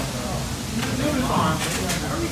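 Restaurant dining-room chatter: voices talking in the background, with a few brief clicks or rustles about a second in and near the end.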